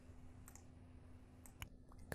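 Near silence over a low steady hum, with a few faint computer-mouse clicks about half a second in and again near the end.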